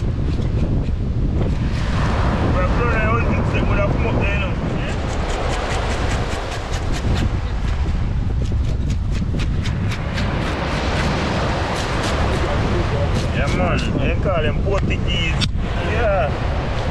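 Wind buffeting the microphone over steady surf, with a quick run of rasping clicks through the middle as a knife scrapes the scales off a fish.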